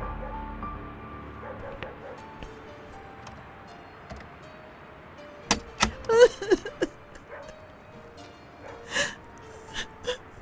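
Soft, sustained background music with a woman sobbing over it: a cluster of sharp, gasping sobs about halfway through, and two more cries near the end.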